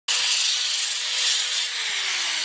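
Ryobi drill fitted with a disc sanding pad, spinning and rasping against the wooden top of a guitar body. Its motor begins to wind down, falling in pitch, near the end.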